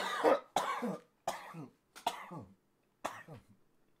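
A man's coughing fit: about five short, harsh coughs with gaps between them, the first the loudest and the later ones fainter.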